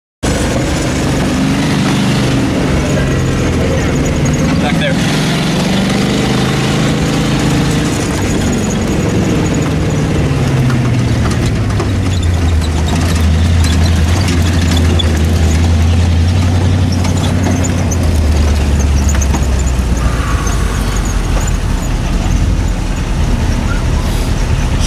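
A 1974 Jeep's engine running, heard from inside the cab. Its pitch wavers up and down for the first several seconds, then slides down to a low, steady note about halfway through, and drops lower again a few seconds before the end.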